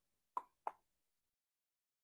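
Two short, sharp taps about a third of a second apart in the first second.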